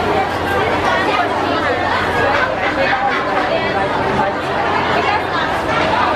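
Several people talking at once close by, voices overlapping in crowd chatter.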